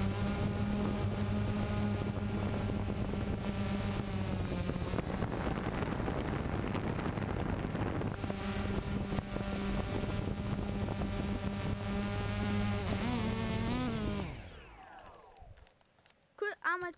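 DJI Phantom quadcopter's motors and propellers buzzing steadily, heard from the camera on board. About thirteen seconds in, the pitch wavers, then the buzz falls away and stops as the motors spin down at landing.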